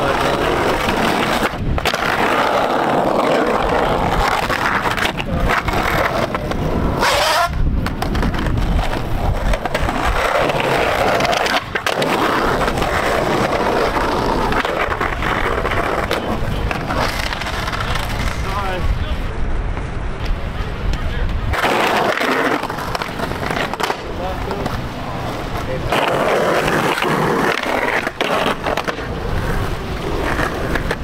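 Skateboard wheels rolling loudly over concrete, with the trucks grinding along a concrete curb in slappy curb grinds, and several sharp clacks of the board hitting the ground.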